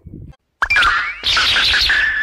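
An edited-in cartoon praise sound effect: a sudden rising glide, then a stretch of noise like clapping and a held tone near the end, leading into a short jingle.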